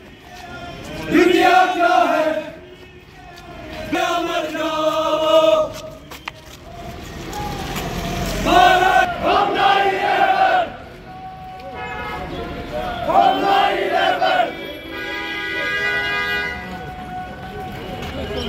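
Crowd of marching men chanting slogans together in loud shouted bursts that come every few seconds, with quieter stretches between.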